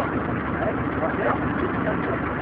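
A steady engine running, powering a cardan-shaft-driven screw cone log splitter, with voices talking over it.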